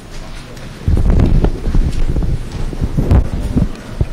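Handling noise from a clip-on lavalier microphone being fitted onto clothing. Loud rustling, rubbing and bumping starts about a second in and goes on unevenly.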